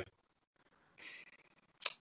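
A pause in a man's speech: a faint breath drawn in about halfway through, then a short mouth click just before he speaks again.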